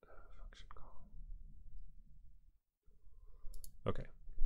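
A faint breathy murmur with a couple of light ticks at the start, then sharp computer-mouse clicks near the end as windows are switched on the desktop.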